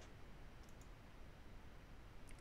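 Near silence with a few faint computer mouse clicks: one at the start and a quick pair about three-quarters of a second in.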